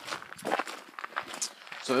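Footsteps of people walking, a handful of uneven steps; a voice starts talking near the end.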